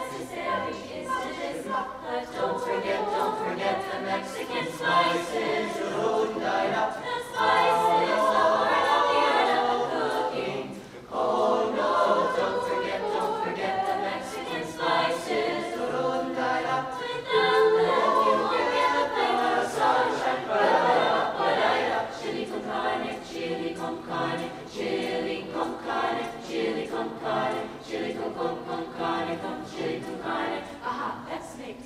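Small mixed-voice jazz choir singing a cappella, with a brief break about eleven seconds in.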